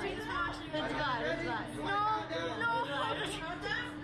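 Young women's voices chattering, no clear words, over a steady hum.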